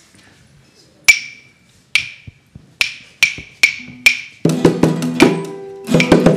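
Six sharp wooden clicks, three widely spaced and then three quicker, counting in the band. Then a small student band starts up about four and a half seconds in: acoustic guitar and keyboard with percussion.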